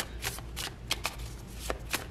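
A deck of tarot cards being shuffled by hand: a run of light, irregular clicks and flicks, several a second.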